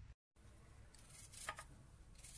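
Near silence: faint room tone, broken by a brief gap of dead silence near the start and a few faint clicks about a second and a half in.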